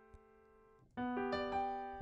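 A piano chord played with both hands about a second in, with a couple more notes added right after and left to ring. Before it, only the last notes of the previous chord are heard fading away.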